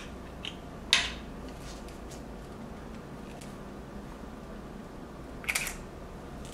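Handling of a Leica M10 camera fitted with a hand grip: a sharp click about a second in and a short run of clicks near the end, over quiet room tone.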